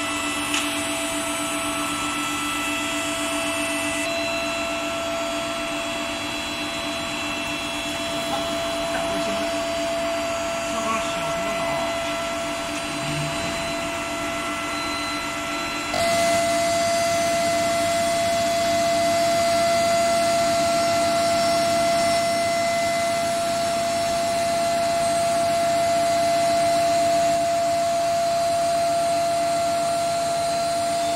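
Steady electrical hum and whine of an induction heat-treatment line heating steel oil casing, made up of several held tones. It jumps louder about halfway through.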